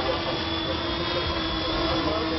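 Quadcopter drone flying, its electric motors and propellers making a steady buzz with a high whine.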